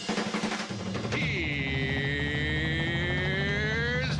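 Big-band theme music under a drum roll. From about a second in, an announcer's long drawn-out 'Heeeere's…' is held over it, dipping and then slowly rising in pitch.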